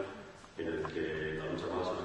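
Only speech: a man talking into a table microphone, after a short pause at the start.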